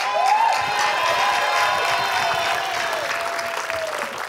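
Studio audience applauding, with a few held musical tones beneath it.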